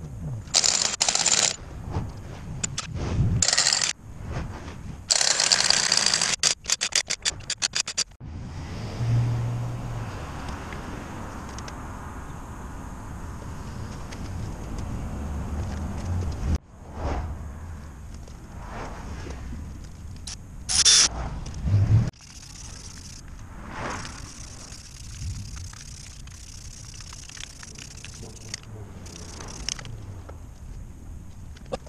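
Scraping and rapid metallic clicking from hand-tool work on a truck's front wheel hub, in short edited clips. The first few seconds hold bursts of scraping and a quick run of clicks. Later clips carry steadier low background noise with a brief loud clatter about two-thirds through.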